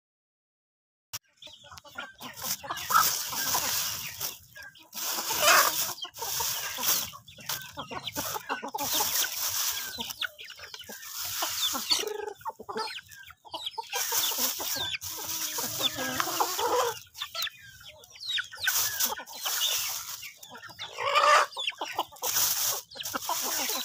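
A flock of chickens clucking while they feed, starting about a second in and going on in irregular bursts.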